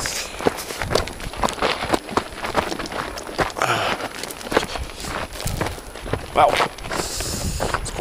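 Footsteps on a dry dirt and gravel trail, an uneven walking rhythm of short scuffs and steps.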